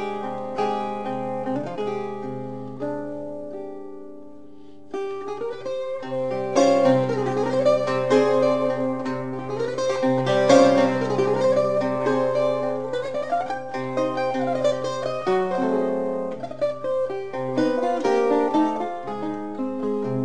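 Instrumental music on Portuguese guitar, its plucked strings ringing in sustained notes. It plays softly at first and grows fuller and louder about five seconds in.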